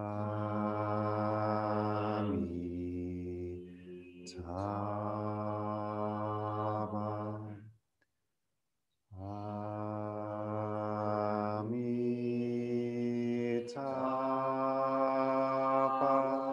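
A man and a woman chanting a Buddhist mantra in long held notes. There are two phrases of about eight seconds with a breath between them, and the pitch steps down and back up within each phrase.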